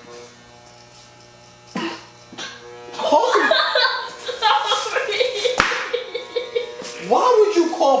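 Corded electric hair clippers buzzing with a steady low hum, with a short knock about two seconds in. From about three seconds in, louder voices take over.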